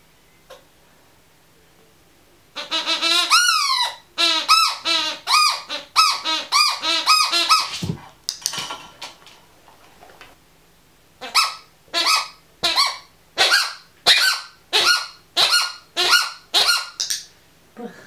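Red rubber squeaky ball squeezed over and over, giving short honking squeaks that bend up and down in pitch, in two bursts of about two or three squeaks a second with a pause of a few seconds between them.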